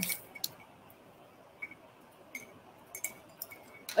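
A handful of light, scattered clicks and taps as paintbrushes are picked up and swapped.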